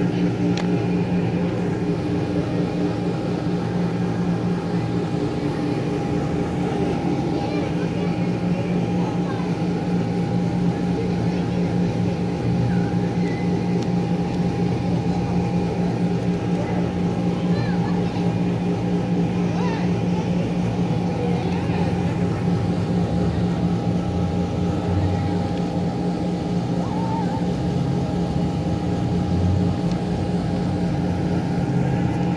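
Electric blower fan of an inflatable arch running steadily, a constant motor hum at one fixed pitch.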